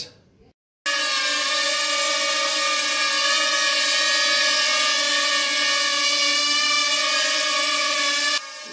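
Small quadcopter built from Tello drone parts on a racing-drone frame, hovering: its motors and propellers give a steady, multi-toned whine. The sound starts suddenly about a second in and holds even.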